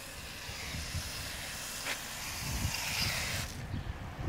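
A garden-hose foam sprayer jetting soapy foam onto a car with a steady hiss, which cuts off sharply near the end.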